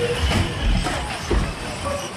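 Electric 1/10-scale 2WD RC buggies running on an indoor off-road track, with a couple of low thuds as they land from the jumps, over steady hall noise.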